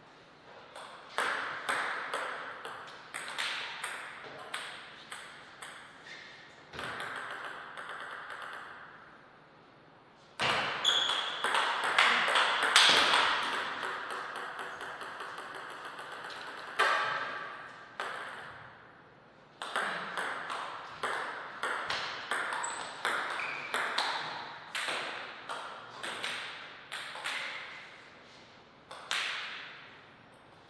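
Table tennis rallies: a celluloid-type ball struck by paddles and bouncing on the table in quick alternating clicks, with a short ring off the hall's walls. There are three rallies with brief pauses between them, and the loudest hits come about a dozen seconds in.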